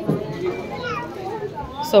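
Quieter talking in the background, higher-pitched than the main voice around it; it may be a child's voice.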